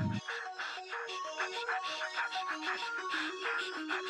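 Background music: a melodic riff of short stepping notes over light ticking percussion, with the heavy bass beat dropped out.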